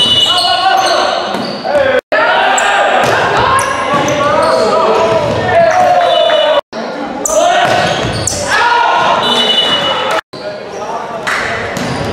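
Volleyball rallies in an echoing gym: players shouting and calling, sneakers squeaking on the hardwood floor, and the ball being struck and hitting the floor. The sound cuts off abruptly three times.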